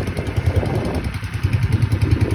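A boat's engine running steadily with a fast, even, low throb.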